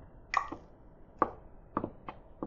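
Four short, sharp clicks spread over two seconds at low level, with a faint room background between them.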